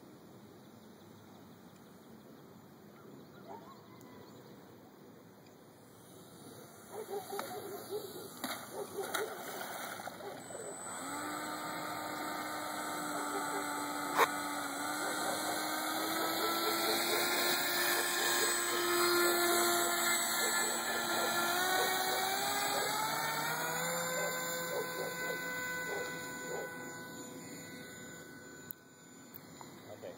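Polaris Ultra RC float plane's electric motor and propeller whining as the plane runs across the water. The whine comes in about eleven seconds in, rises in pitch with the throttle, is loudest midway, climbs again a couple of seconds later and fades near the end.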